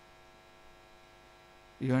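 Faint, steady electrical mains hum in a pause in speech, then a man starts speaking near the end.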